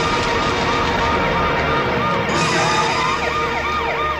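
Siren of an arriving emergency vehicle, starting as a quick warble that grows louder and, about halfway through, turns into a fast up-and-down yelp.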